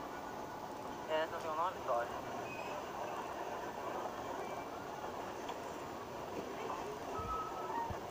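Steady running noise of a vehicle moving along a woodland track, played back through a phone's speaker. A brief voice is heard about a second in.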